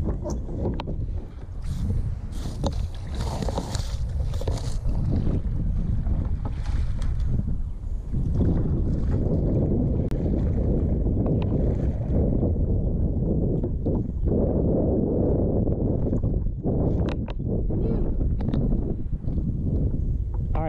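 Wind rumbling on the microphone while a kayak paddle dips and splashes in the water, with a few splashy strokes in the first few seconds.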